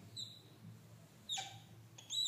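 Whiteboard marker squeaking against the board while drawing straight lines. It gives a short, faint squeak just after the start and a longer squeak rising in pitch about a second and a half in.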